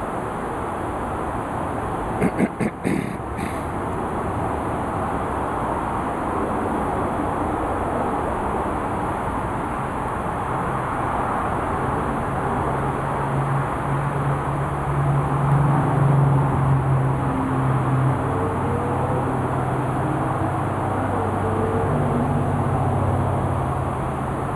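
Steady outdoor background noise with a low, droning motor-like hum that comes in about halfway and swells a few seconds later. A few light clicks sound about two to three seconds in.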